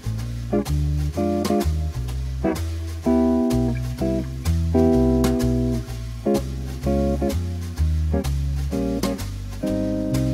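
Archtop electric jazz guitar comping major-seven and other jazz chords in compact three-note triad voicings, short stabs mixed with held chords, over a bass line moving about two notes a second.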